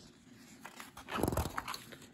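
A paper page of a spiral-bound book being flipped over, with one short loud flap and rustle about a second in.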